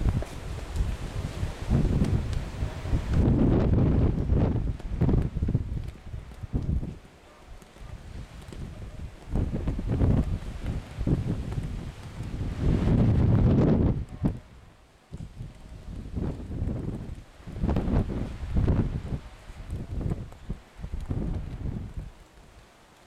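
Wind buffeting the microphone: a low rumble that comes and goes in gusts, strongest around four and thirteen seconds in.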